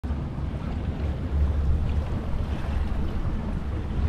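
Wind buffeting the microphone aboard a center-console boat on open water, a steady low rumble mixed with water noise.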